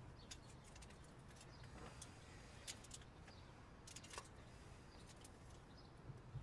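Near silence: faint outdoor ambience with a scattering of faint light clicks and ticks, the two clearest nearly three and about four seconds in.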